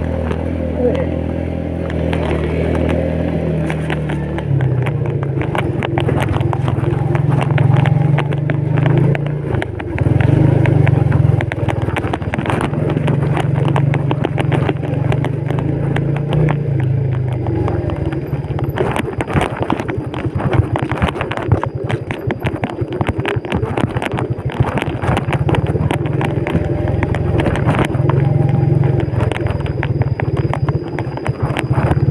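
Yamaha Vega underbone motorcycle's single-cylinder four-stroke engine running under load while ridden on a rough dirt track, its pitch shifting in steps as the throttle and gears change. From about halfway on, many knocks and rattles from the bike jolting over the rough ground sound over a quieter engine.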